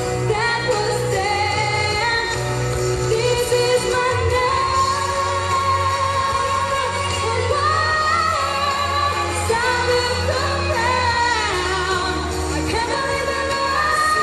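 A woman singing a pop ballad live into a handheld microphone over instrumental accompaniment, holding long notes.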